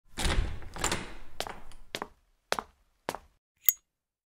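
Intro sound effect of hammer blows on an anvil. Two heavy, noisy blows in the first second or so are followed by sharp strikes about every half second, and the last strike rings brightly.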